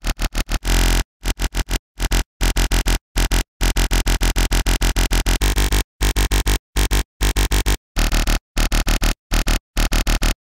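Growly synthesized dubstep bass from the Serum synth, playing a chopped rhythmic pattern of short, stuttering notes with a deep sub and a gritty top, cut by brief gaps.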